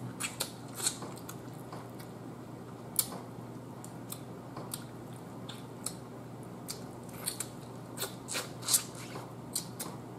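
Close mouth sounds of eating a turkey neck by hand: chewing and smacking as meat is pulled off the bone, with scattered short sharp clicks, the loudest about three seconds in.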